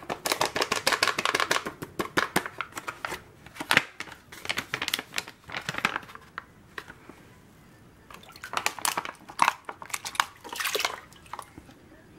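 Plastic bag crinkling and hands scrubbing and rinsing gravel in a wire-mesh strainer set in a water-filled gold pan, with light splashing. The strokes come thick and fast for the first few seconds, ease off in the middle, and pick up again near the end.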